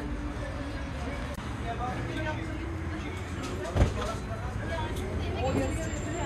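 Busy outdoor ambience: indistinct background voices over a low, steady rumble, with one sharp knock a little under four seconds in.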